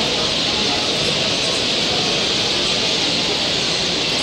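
Steady din of a bird-show hall: many small caged birds twittering together in a dense high chatter, with people talking faintly underneath.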